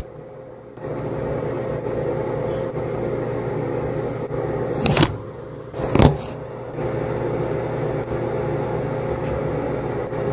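Steady electric hum of a bathroom ventilation fan. Two sharp knocks come about five and six seconds in.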